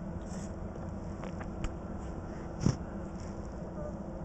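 Steady low hum inside a truck cab, with a few faint clicks and one short knock a little past halfway.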